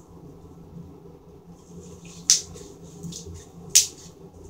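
Clear glitter slime being squeezed and worked by hand, giving soft crackling and two sharp pops or clicks, the loudest about two and a quarter and three and three quarter seconds in. A low steady hum runs underneath.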